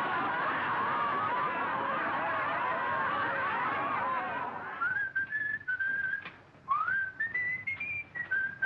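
A classroom full of boys laughing loudly together, fading out about four and a half seconds in. Then a tune is whistled in clear single notes, with a quick upward scoop about seven seconds in and the notes stepping higher toward the end.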